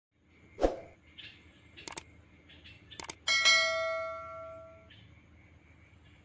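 A thump about half a second in and a few sharp clicks, then a bell-like chime about three seconds in that rings on and fades away over about a second and a half.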